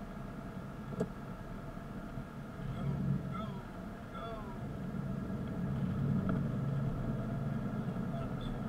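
Inside an older Lincoln sedan as it pulls away in traffic: engine and road noise swell from about two and a half seconds in. There is a sharp click about a second in.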